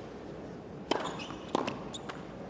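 Tennis ball struck by racket and bouncing on a hard court during a rally: three sharp pops in the second half, the first with a brief ring, over steady background noise.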